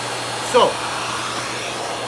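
Miele bagged canister vacuum running steadily on high suction, a continuous rushing with a faint high whine. The floor head is lifted and the bag is nearly new, so the airflow is unobstructed.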